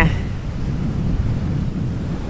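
Gale-force wind buffeting the microphone: a loud, uneven low rumble.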